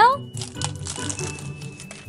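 Thin plastic shrink-wrap crinkling in irregular small crackles as it is picked at and peeled off a small toy lip-gloss case.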